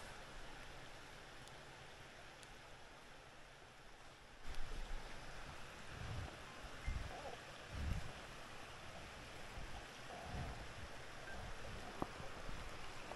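Steady rush of flowing stream water, louder from a little after four seconds in, with a few short low thumps in the second half.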